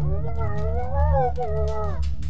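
A long wordless wail, a voice-like cry that rises a little and then falls away, over a steady low drone.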